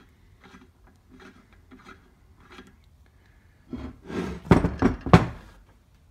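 Metal lathe parts handled on a wooden workbench: a threaded part turned and worked free from a cast-iron carriage casting with faint rubbing and clicks, then a louder bout of scraping about four seconds in that ends in two sharp knocks as metal is set down on the wood.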